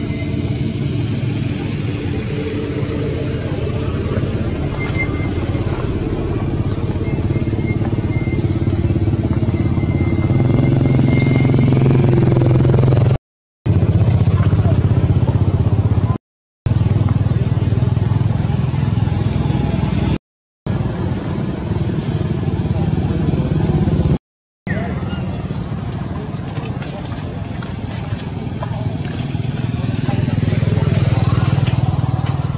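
Steady low hum of a running engine with voices under it, cut off completely four times for a moment.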